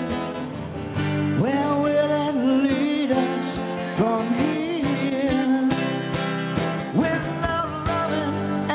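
Live blues band playing a slow ballad, a lead melody line swooping up into long held notes three times over the band.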